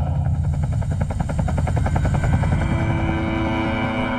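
Helicopter rotor chopping with a fast, even beat, and a steady low drone coming in past the middle.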